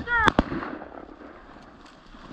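Two shotgun shots in quick succession, fired at a pheasant, about a tenth of a second apart near the start, over a man's brief shout.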